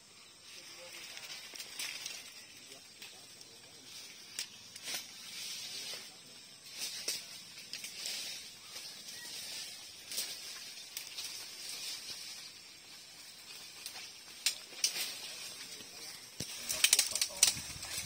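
Leaves and twigs rustling, with scattered light snaps and scrapes over a faint steady high hiss; the rustling gets busier and louder near the end.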